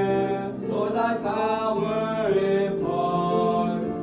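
Teenage boys singing a church song together, their voices holding long notes of about a second each, one after another.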